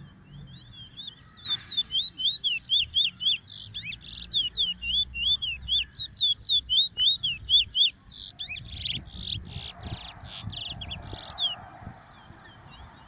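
A caged Trinidad bullfinch (chestnut-bellied seed finch) singing a long run of quick, sweeping whistled notes, several a second. Harsher buzzy notes break in once midway and again in a string near the end.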